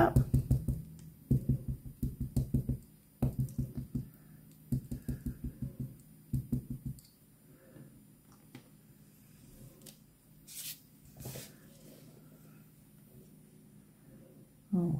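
A clear-mount stamp on an acrylic block patted again and again on an ink pad to ink it: quick runs of dull taps, several a second, in a handful of bursts over the first seven seconds. Two brief paper rustles follow near the end.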